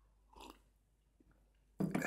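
Mostly quiet room tone at a microphone with a faint mouth sound, then near the end a sudden loud throat noise from a man, like a cough.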